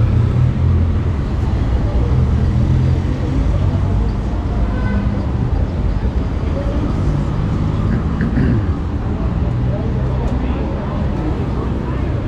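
City street traffic: car and motorcycle engines running and passing by in a steady low rumble, with voices of passers-by.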